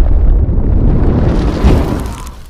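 Loud, deep rumbling explosion sound effect with a fiery crackle, starting to fade away near the end.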